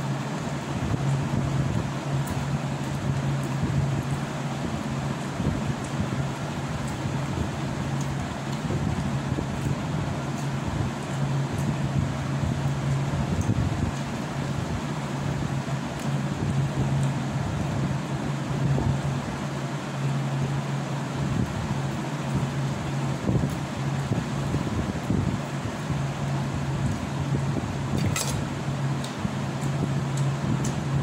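A steady low mechanical hum with an even rushing air noise, of the kind a running electric fan makes. A few sharp clicks come near the end.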